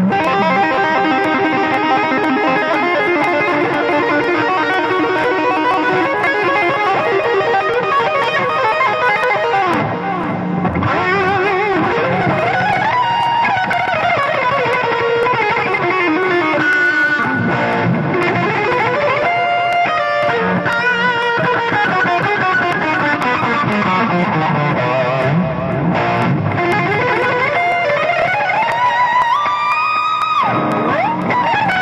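Electric guitar played through a '68 Crunch' pedal, an analog FET emulation of a Marshall Plexi overdrive, with the gain turned up high for a saturated crunch. Lead lines with long sliding and bending notes that rise and fall, mixed with fast runs and held notes.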